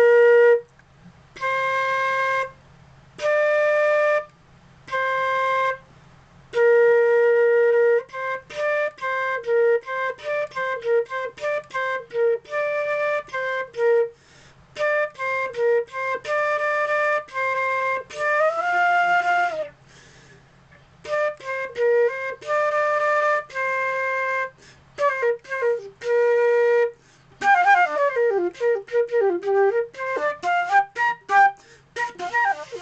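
Concert flute played solo. It opens with separate held notes of the beginner B-flat, C, D exercise, then moves into quicker runs of short notes, with a wavering sliding note about two-thirds of the way in and a fast run of falling notes near the end.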